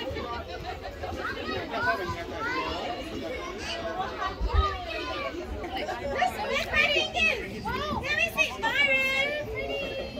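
Overlapping chatter of young children and adults talking over one another, with high children's voices calling out more strongly in the second half. A brief low thump comes about halfway through.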